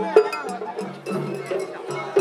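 Festival hayashi music from a float's ensemble: bamboo flutes over drums, with sharp metallic strikes about four a second. The rhythm shifts about a second in.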